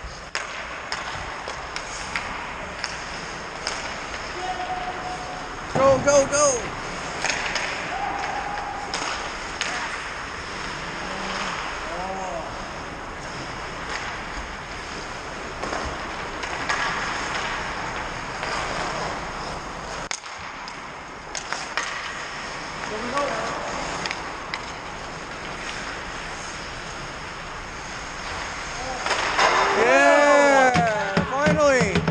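Ice hockey game in an indoor rink: scattered clacks and knocks of sticks, puck and skates on the ice and boards, with players' short shouts now and then.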